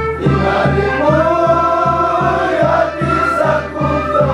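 A group of Qhapaq Qolla dancers singing a song together in chorus, over a steady drum beat of about three strokes a second.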